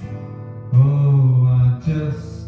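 Electric and acoustic guitars playing a slow soul tune, quietly at first. About a third of the way in, a loud held note of about a second comes in, and a second one starts near the end.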